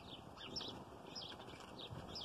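Wild birds chirping faintly, a string of short, high calls.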